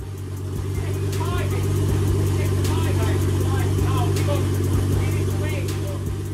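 Nissan Skyline R32 GT-R's RB26DETT twin-turbo straight-six idling steadily, with people's voices over it.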